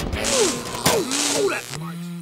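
A man's voice crying out twice, each cry mixed with a burst of hissing noise. A steady low hum comes in near the end.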